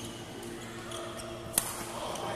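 A badminton racket striking a shuttlecock once, a sharp crack about one and a half seconds in.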